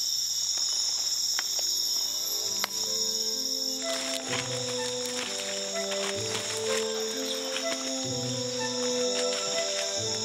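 A steady, high-pitched night insect chorus of tropical forest, with background music of slow, held notes coming in about two and a half seconds in and carrying on over it.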